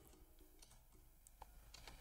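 Near silence, with a few faint, scattered clicks of a computer keyboard.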